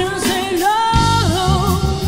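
Female singer singing long, sliding held notes with vibrato, with a live band coming in beneath her about a second in.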